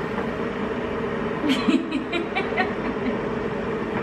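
A steady low hum in the room, with brief soft chuckling in the middle.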